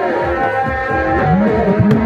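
Live folk music: two-headed barrel drums beaten by hand in a fast, dense rhythm, with a wind instrument playing a wavering melody above them.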